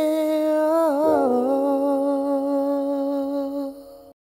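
Closing hummed note of a song: one voice holds a long note, dipping briefly in pitch about a second in, over a sustained chord, then fades out near the end.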